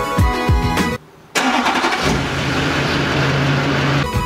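Background music with a beat cuts off about a second in; after a short gap a 2005 Chevrolet Duramax pickup's 6.6-litre V8 turbo-diesel starts up suddenly and runs steadily.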